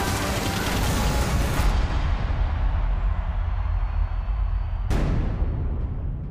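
Trailer music over a battle: a dense volley of gunfire for about the first two seconds, then a deep rumble dying away. About five seconds in comes a single heavy boom that rings out.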